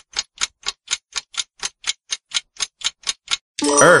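Clock-style ticking sound effect for a quiz countdown timer, about four even ticks a second. Near the end a short ringing chime sounds together with a synthesized voice starting to speak.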